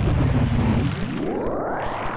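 Electronic noise from a small handheld synthesizer, the Postcard Weevil, run through effects while its knobs are turned: a low, noisy rumble with a slowly falling tone, then a sweep that rises steadily in pitch over the second half.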